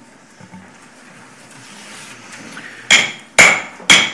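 Three raps of a wooden gavel on its sound block, about half a second apart near the end, each with a short ring: the gavel calling the meeting to order.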